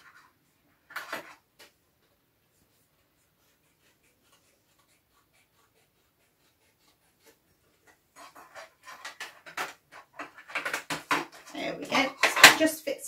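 Crafting handling noise of a card circle and a lid: a brief rustle about a second in, then a growing run of scratchy clicks and scrapes over the last few seconds as the card is worked into the lid for a snug fit.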